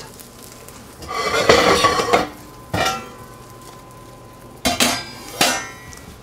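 A large stainless-steel stock pot set down and shifted on a gas stove's grate: a scraping metal clatter with a ringing note about a second in, a single knock, then two sharp ringing metallic clanks near the end.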